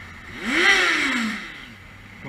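Motorcycle engine revving once: the pitch climbs and falls back over about a second, with a rush of noise at the peak.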